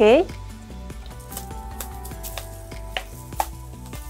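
Soft background music with held notes, with a few light clicks and taps as sliced mushrooms are tipped from a wooden bowl into a frying pan with a wooden spatula.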